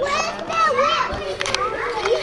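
Children's high-pitched voices, wordless and gliding up and down, over the background chatter of other children playing, with a couple of brief sharp clicks in the second half.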